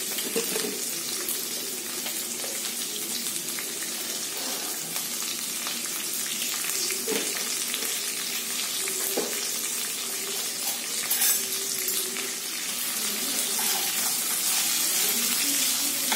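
Sliced onion, dried red chillies and cashew nuts sizzling steadily in hot oil in a nonstick kadai, with a few faint clicks along the way.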